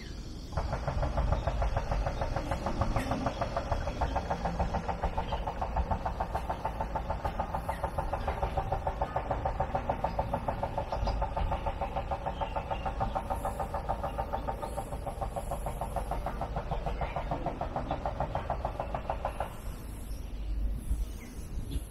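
A cicada calling: a fast, even pulsing buzz that starts abruptly and holds steady for about nineteen seconds before stopping suddenly.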